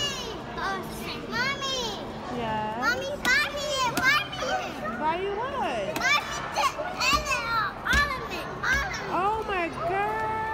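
Young children's high-pitched voices chattering and squealing, rising and falling in pitch and overlapping one another, with no clear words.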